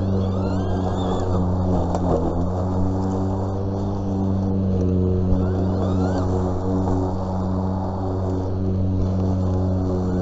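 EGO cordless battery-powered push lawn mower running while mowing grass: a steady, even hum from its electric motor and spinning blade.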